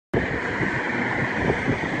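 Steady outdoor background noise: a rumble and hiss, like traffic or wind on the microphone.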